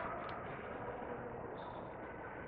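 Faint, steady background hiss with no distinct sound event: a pause in the dialogue.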